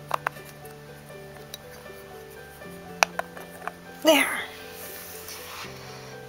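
Soft background music with held notes, under a few light, sharp clicks of a hard plastic capsule being handled and set down on a countertop. A short vocal sound, such as a laugh or exclamation, comes about four seconds in.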